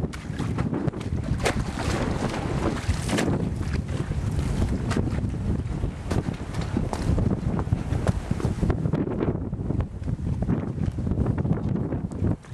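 Wind buffeting the microphone: a loud, gusting rumble, with scattered short clicks.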